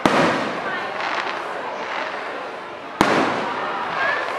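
Aerial firework shells bursting: a sharp bang right at the start and another about three seconds later, each followed by a fading echo.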